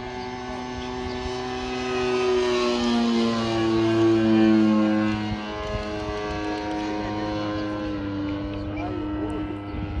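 Engine of a Bücker 131 scale radio-controlled model airplane running in flight overhead. It grows louder to a peak about four seconds in as it passes, its pitch falling as it goes by, then drones on more steadily.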